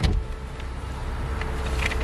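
Steady vehicle noise with a low rumble and a faint hum, slowly growing louder, heard through a car's open window at the roadside; it opens with a short knock.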